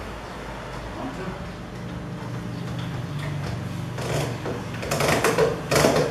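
A one-handed trigger bar clamp being set onto a pine panel frame and squeezed shut. A run of clicks and knocks starts about four seconds in, over a low steady hum.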